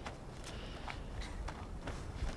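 Footsteps: irregular crunching clicks, a few a second, over a low rumble.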